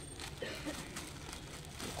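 Thin clear plastic bags crinkling as a gloved hand pushes through bagged dolls hanging on a rack, an irregular run of small rustles and crackles.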